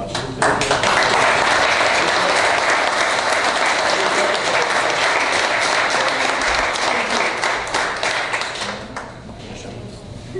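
Audience applauding, starting suddenly about half a second in and dying away shortly before the end.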